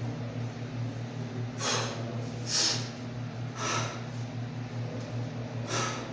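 A man breathing hard after exercise, with four noisy breaths out spread across a few seconds, over a steady low hum.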